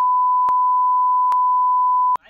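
Steady high-pitched censor bleep, one unbroken tone at a constant level blanking out the speech, with two faint clicks in it.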